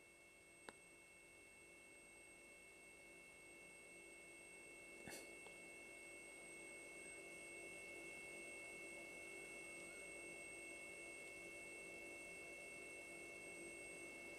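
Near silence: faint steady electronic whine at several pitches, with a couple of soft clicks.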